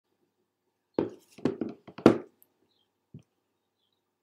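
Close knocks and thumps of handling right by the computer's microphone: five in quick succession about a second in, then a single one a second later.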